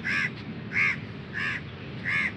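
A crow cawing over and over, three short calls evenly spaced about two-thirds of a second apart.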